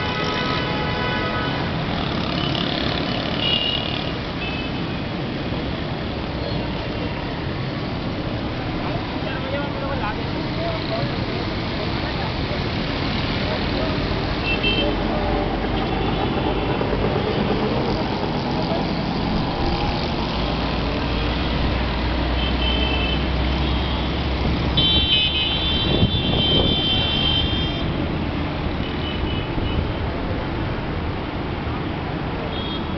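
Heavy mixed road traffic: a steady din of engines with horns sounding again and again, loudest in a cluster of horn blasts near the end.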